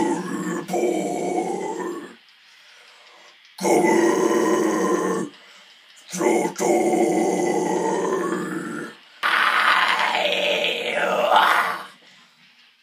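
Harsh metal vocals, growled into a microphone with no accompaniment heard: four long phrases with short silent gaps between them. The last phrase is brighter and more screamed, its pitch rising and falling.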